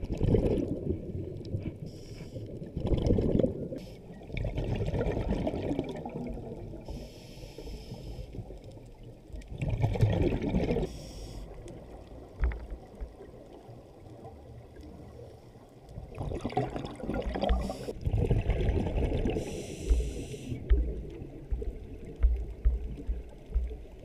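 Scuba diver breathing through a regulator underwater: hissing inhalations alternating with gurgling bursts of exhaled bubbles, every few seconds.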